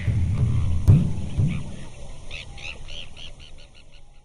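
Sound effect for an animated logo: a whoosh with a low rumble and a sharp hit about a second in, then a run of quick, evenly spaced chirps, about five a second, that fade out near the end.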